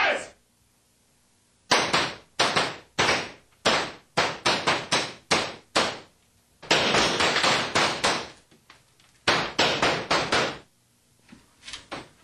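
A rapid series of about fifteen loud, sharp bangs at uneven spacing, with one longer unbroken burst of about a second and a half in the middle.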